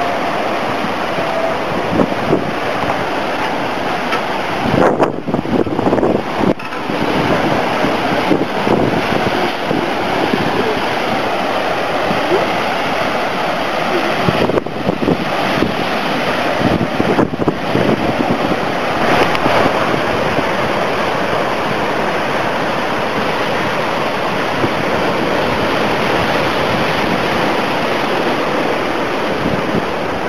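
Hurricane-driven surf breaking on a rocky shore: a loud, steady rush of waves and foaming wash, with wind buffeting the microphone.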